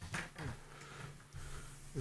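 Quiet pause in a small studio: faint room tone with a steady low hum and a few soft brief noises in the first half-second.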